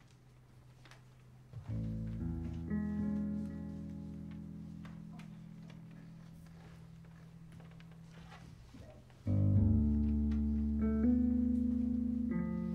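Electric bass chords, likely tapped, played slowly: a chord enters about two seconds in and rings while slowly fading, then a louder chord comes in near nine seconds with more notes added on top of it.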